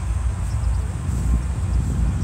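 Wind rumbling on a phone's microphone outdoors: a steady low buffeting with no other distinct sound.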